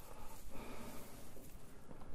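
Quiet, crackly rustling of dry hay as a flake is pulled apart by hand and lifted into a barrel slow feeder.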